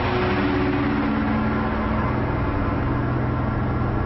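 A steady, loud rushing rumble, a cartoon action sound effect, with a few low held music notes underneath.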